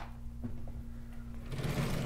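Sliding blackboard panels being pulled down in their frame, a rumbling rattle that starts about one and a half seconds in, over a steady low electrical hum.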